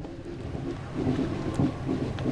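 Wind rumbling on the microphone, a steady low noise.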